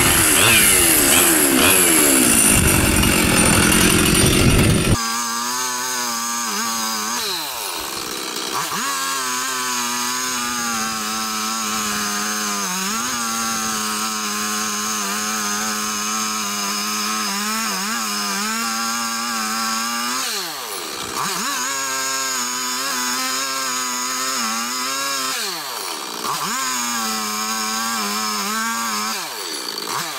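Two-stroke chainsaw running at high throttle while cutting into a tree trunk. Its pitch sags and recovers again and again as the chain bogs in the cut. It is louder and rougher for the first few seconds, then steadier after a sudden change about five seconds in.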